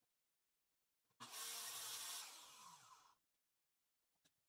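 Metal clamp-on straight edge scraping across a plywood sheet as it is slid into position for the next kerf cut. The sound starts about a second in, lasts about two seconds and stops abruptly.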